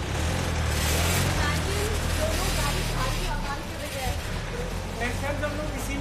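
A motor vehicle's engine running close by, a low steady rumble that fades after about three seconds, with faint voices in the background.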